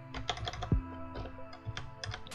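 Keystrokes on a computer keyboard: a quick, irregular run of clicks as a word is typed, over steady background music.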